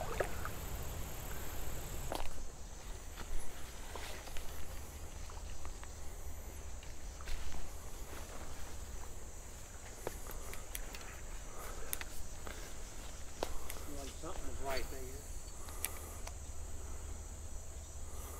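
Steady high-pitched insect drone, with scattered clicks and rustles of footsteps and brush.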